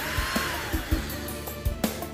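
Cordless drill-driver running briefly to back out a screw, its motor whine falling in pitch as it stops, over background music with a steady beat.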